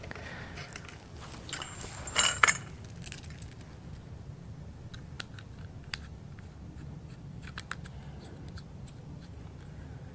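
Small metal clicks and clinks of a four-port multi-line air fitting being handled and keyed onto its mating connector, with a louder metallic jingle about two seconds in, then only sparse light clicks.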